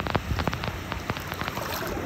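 Sea water splashing and dripping in quick, irregular ticks, over a steady low rumble of waves and wind.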